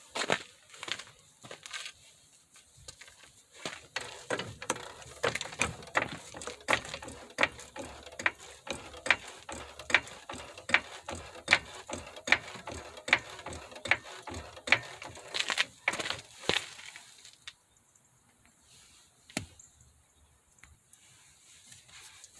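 A Pittsburgh hydraulic floor jack is being pumped by its handle to lift the front of a car. It makes a steady series of mechanical clicks and clunks, about two a second, that stop a few seconds before the end.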